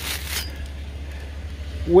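Handling noise: a brief rustle at the start as a chainsaw bar is picked up from among loose chains and plastic wrapping, over a steady low hum.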